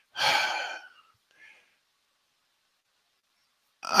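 A man's audible sigh into the microphone: one breath out about a second long right at the start.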